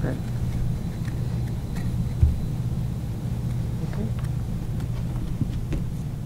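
Steady low hum and rumble of a meeting room's background noise, with a single low thump about two seconds in.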